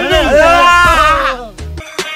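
A person's voice calling out in one long wavering cry over background music. The cry ends about a second and a half in, and the music carries on with sharp percussive hits.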